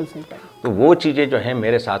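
A man's voice speaking, after a short pause at the start, with one syllable sliding up and back down in pitch.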